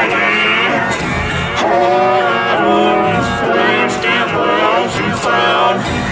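A guitar-and-vocal song playing, with a held, wavering melody line over a steady strummed beat.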